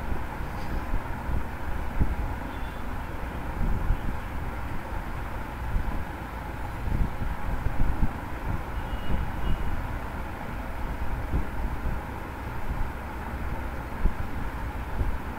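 Steady low rumbling background noise picked up by an open microphone, with irregular low thumps scattered through it.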